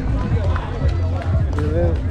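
Voices of people talking around the walker on a busy path, with footsteps and a steady low rumble on the microphone.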